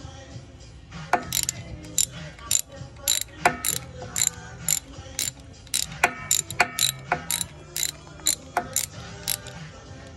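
Socket ratchet wrench clicking as it turns a brake caliper bolt, in short runs of sharp pawl clicks, about three to four a second, starting about a second in.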